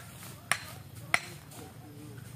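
Two sharp knocks, about two-thirds of a second apart, from stonework on a hut foundation: stones or a mason's tool striking rock as the foundation stones are set.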